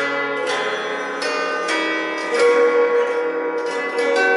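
Two six-chord guitar zithers with mandolin stringing played together in two parts, a plucked melody over strummed chords, each stroke left ringing. The players say the two instruments are not quite in tune with each other.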